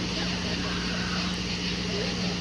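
Steady low electrical hum with background hiss from the sound system, unchanging through a pause in the talking.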